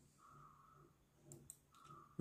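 Near silence with two faint, short clicks about one and a half seconds in.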